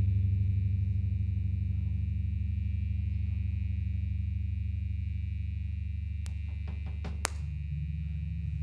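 Electric guitar and bass amplifiers left ringing out at the end of a song: a steady low drone with a thin high tone held over it, slowly fading. A few clicks come near the end, with a sharp pop about seven seconds in.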